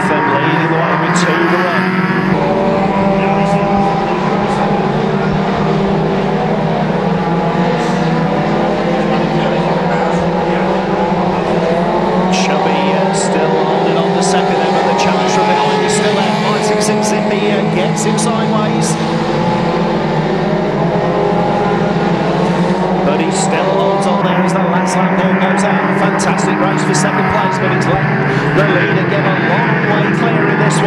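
Engines of a pack of banger racing cars running and revving together as they race round a shale oval, several engine notes overlapping and shifting in pitch, with scattered sharp clicks and knocks.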